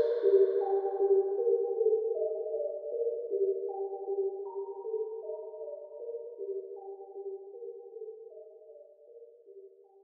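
Closing bars of a dark rap instrumental beat: a lone synth melody of mid-range notes changing every half second to a second, with no drums or bass, fading out to silence near the end.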